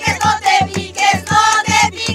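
A group of women singing a Cajamarca carnival copla together over a steady beat of about four a second.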